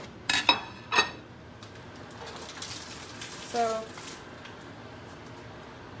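A ceramic plate set down on a granite countertop: three sharp clinks within the first second, then faint handling noise.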